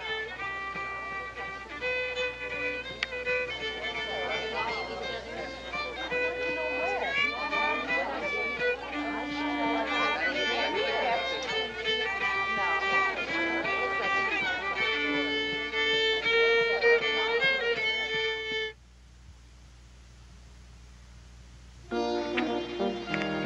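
A fiddle playing a tune, which cuts off suddenly near the end, leaving only faint hiss.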